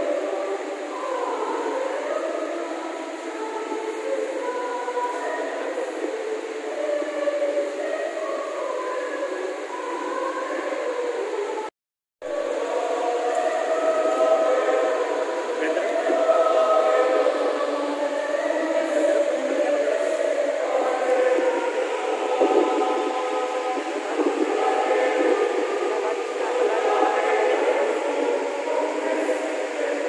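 A choir singing a sustained hymn in many voices, with a short silent break about twelve seconds in.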